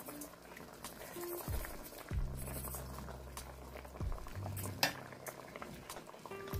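A metal spoon stirring pork rib pieces in a cooking pot, with a few soft clinks and scrapes of the spoon against the meat and pot.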